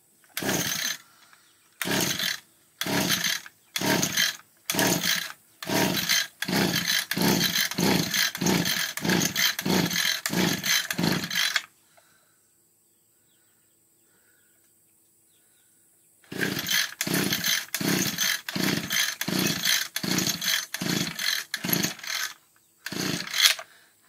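Echo two-stroke string trimmer being pull-started: repeated yanks on the recoil starter cord crank the engine, about one pull a second, in two runs with a pause of about four seconds in the middle. The engine never catches and fails to start.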